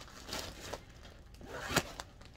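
Clear plastic zippered bag crinkling and rustling as it is handled, in a few short rustles with the loudest near the end.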